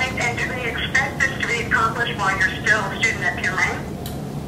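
A woman's voice talking through a mobile phone held to a listener's ear, indistinct, answering a question.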